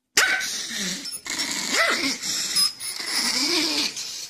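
Small long-haired Chihuahua play-growling and yapping at a teasing hand, a continuous rough growl that starts suddenly, with a short rising-and-falling yelp about two seconds in.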